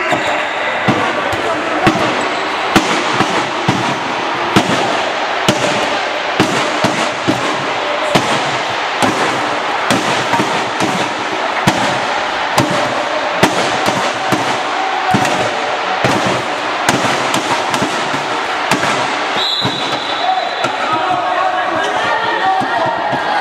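Indoor handball game: a constant din of voices and hall noise, cut through by frequent sharp bangs at an uneven pace, two or three a second. About three-quarters of the way through, a referee's whistle gives one short blast.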